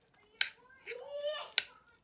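Metal spoon clinking against a plate twice, about a second apart, as food is scooped up.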